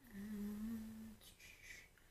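A woman's closed-mouth 'hmm', held at a steady pitch for about a second while she reads. It is followed by a short, quieter breathy sound.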